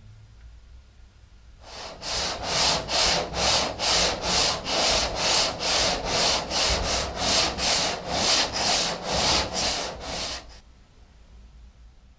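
Hand sanding body filler on a car body panel: even back-and-forth rubbing strokes, about two and a half a second, starting a couple of seconds in and stopping shortly before the end.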